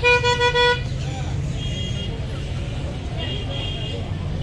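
A vehicle horn honking a quick run of short, flat-pitched toots in the first second, over a steady low background rumble.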